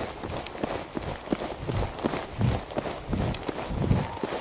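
Footsteps of a person running on a rough tarmac track, with low thumps coming in a steady rhythm.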